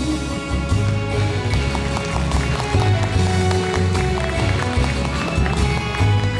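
Instrumental interlude of an enka karaoke backing track, with a bass line and a steady percussion beat and no voice.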